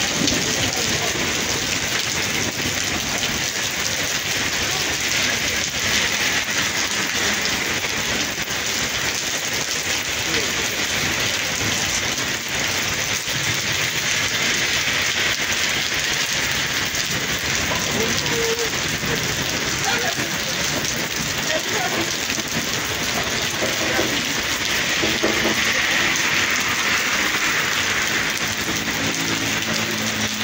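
Heavy rain falling steadily on a wet paved street and pavement, making an even, unbroken hiss.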